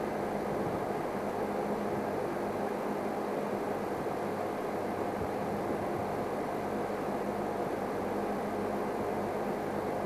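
Steady low engine-like hum with hiss, like a vehicle idling, with no distinct events.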